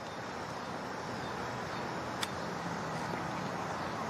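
Steady outdoor golf-course background noise with a single crisp click about two seconds in: a wedge striking the ball on a short pitch shot from just off the green.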